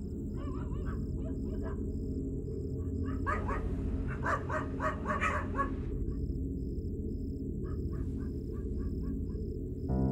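Dark film score: a low sustained drone under a faint, evenly pulsing high tone, with clusters of wavering animal-like calls that are densest and loudest from about three to six seconds in.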